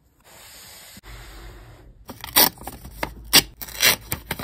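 Fingers rubbing steadily over a sticker on a notebook cover, a soft even scratch. From about two seconds in come loud, crisp rustles and crinkles of paper being handled, several sharp strokes in quick succession.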